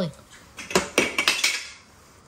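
Sticks of chalk clattering together: a quick run of light clicks about a second in.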